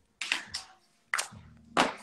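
A few sharp clicks and taps, about four in two seconds, the last the loudest: small tools and containers being handled and set down on a worktable.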